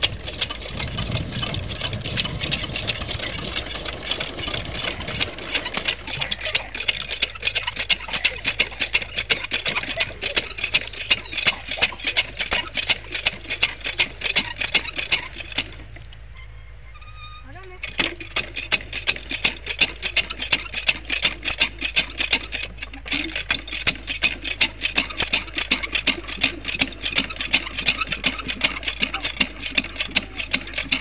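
Old 6 hp Kirloskar single-cylinder diesel engine driving an irrigation water pump, being started and then running with a steady knocking beat of a few strokes a second. The beat breaks off briefly about halfway, then picks up again.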